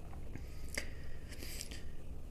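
Low steady room hum in a quiet pause, with a few faint clicks and a soft hiss near the end.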